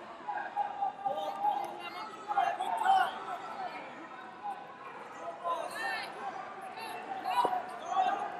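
Faint, overlapping voices of coaches and spectators calling out across a large, echoing sports hall.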